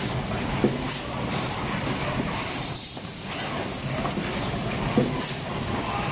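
Automatic box wrapping machine running: a steady mechanical clatter with a hiss that comes and goes. There is a sharp knock about half a second in and another about five seconds in.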